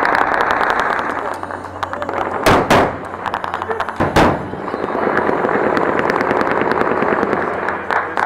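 Dense crackling with voices, broken by three loud bangs: two close together about two and a half seconds in, one more at about four seconds.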